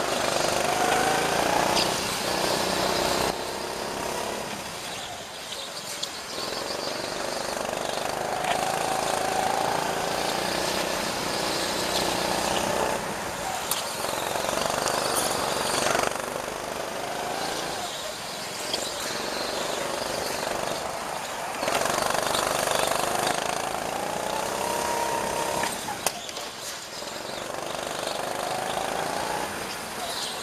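Kart engine heard onboard during a lap, its note rising as it accelerates and dropping as it slows, in a repeating cycle every few seconds.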